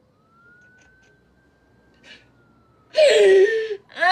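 A woman sobbing alone: a quiet breath about two seconds in, then a loud wailing sob near the end. Under it a faint high held tone rises a little and then slowly falls.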